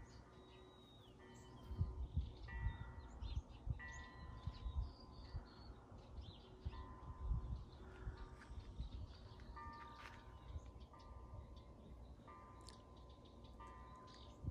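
A wind chime rings in the breeze: single notes and small clusters of notes are struck irregularly every second or two, each ringing for about a second, over a low rumble.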